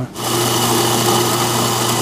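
Electric coffee sample grinder running steadily, grinding roasted coffee beans. A steady motor hum runs under a dense grinding noise.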